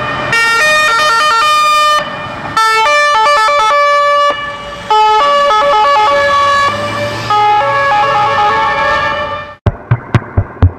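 Electronic music: a synthesizer melody of short, stepped notes played in phrases with brief breaks, fading out just before the end. Drum-machine hits start right after it.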